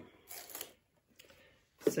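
A brief scraping rustle as a cutting mat carrying a sheet of patterned paper is set down and slid onto a cutting machine's feed tray, with a fainter shuffle about a second and a half in.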